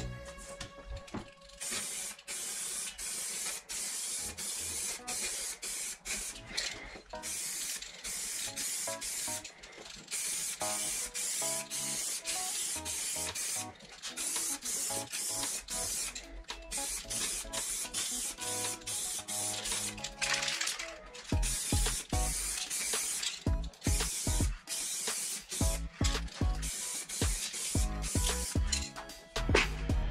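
Aerosol spray paint can (crackle-effect spray) hissing in many short bursts as paint is sprayed, with brief gaps between bursts.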